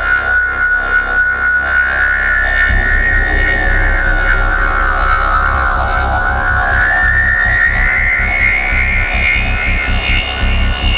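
Goa trance at about 142 beats a minute: a held synth lead glides slowly down in pitch and then back up. About three seconds in, a pulsing bass and beat come in beneath it.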